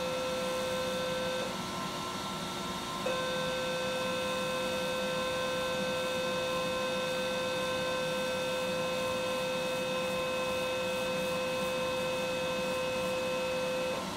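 Ellman Surgitron radiofrequency unit sounding its steady mid-pitched activation tone while the wire-loop electrode cuts: a short tone, a pause of about a second and a half, then one long unbroken tone that stops near the end. A smoke-evacuator hose hisses steadily underneath.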